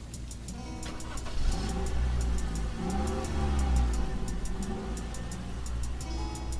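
Lo-fi hip-hop beat with steady ticking percussion about four times a second over deep bass. In the middle a low rumbling swell, its pitch rising and then falling, builds up and fades away.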